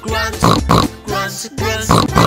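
Upbeat children's song with backing music: the line "the hog goes grunt" is sung, with cartoon pig grunts.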